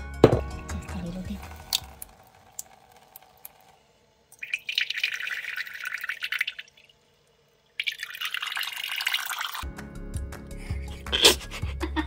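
Tap water running into a small ceramic bowl in a sink, in two stretches of about two seconds each with a brief silence between. Background music with a steady beat plays at the start and returns near the end.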